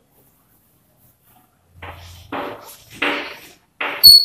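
Chalk scratching on a chalkboard as words are written, in a few short strokes in the second half, with a sharper tap at the end.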